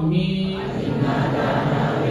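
Congregation chanting together in unison, low voices holding long drawn-out notes. A single clearer lead voice gives way to the whole group about half a second in.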